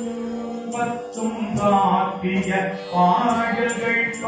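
Devotional mantra chanting on sustained pitches, with a small high-pitched metal instrument struck again and again, two or three strikes a second, each leaving a brief ring.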